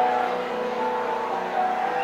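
Electronic keyboard playing sustained notes, a melody of held tones moving over steady chords.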